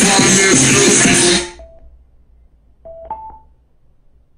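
A song with vocals playing loudly through Tronsmart Element Groove Bluetooth speakers, cut off abruptly about a second and a half in. Shortly after, a brief electronic beep, then near three seconds in a quick two-note rising electronic chime.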